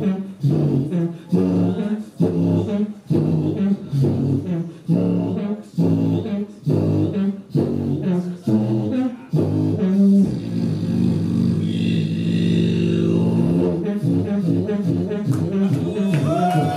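Beatboxing into a handheld microphone: a punchy kick-and-snare pattern at about two beats a second, then from about ten seconds in a long, low droning bass hum held under the beat, with quicker, busier sounds near the end.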